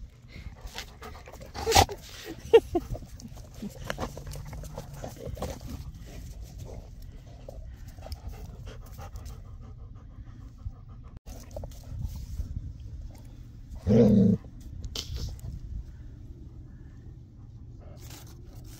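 Dog panting while mouthing rubber balls, with a few sharp clicks about two seconds in and one short, louder low vocal sound about fourteen seconds in.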